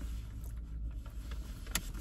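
Low steady rumble of a car heard from inside the cabin, with a few faint clicks and one sharper click near the end.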